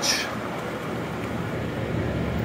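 Steady whooshing noise of large cooling fans blowing air across the front of the car, with no distinct events.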